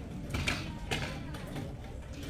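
Chairs being moved and rearranged in a hall: a couple of sharp knocks and creaks from the chairs, about half a second and one second in, over low background chatter.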